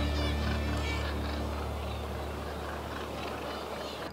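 Seabirds calling: a quick run of short, high, wavering cries in the first second or so, over a steady low drone that slowly fades.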